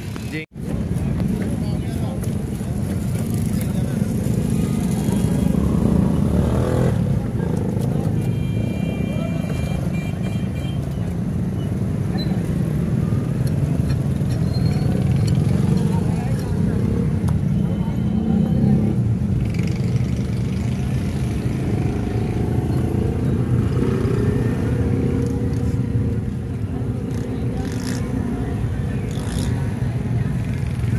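Steady low rumble of motorcycles and road traffic with voices mixed in, the ambience of a roadside street market.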